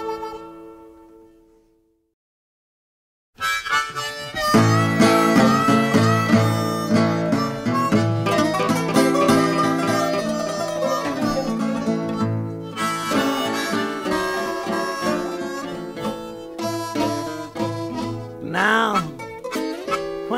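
Acoustic country blues band recording. The last notes of one song fade out over the first two seconds, then there is a moment of silence. About three seconds in, the next tune starts with an instrumental intro of guitars and harmonica.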